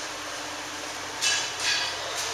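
Shoes scuffing on a concrete floor, two short scrapes in the second half, over steady indoor room noise.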